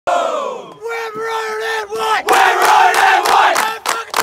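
A group of men starting a team song: a shout that falls away, then a long held sung note, and just over two seconds in the whole group breaks into a loud chant with regular claps.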